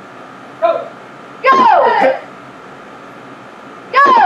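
Loud taekwondo kihap shouts with a falling pitch, one about one and a half seconds in and another starting near the end, each with a kick; a short quieter call comes just before the first, and a sharp snap follows it.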